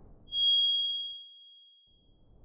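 A single bright, bell-like ding sound effect struck about a third of a second in and ringing away over about a second and a half, as a fading swoosh ends.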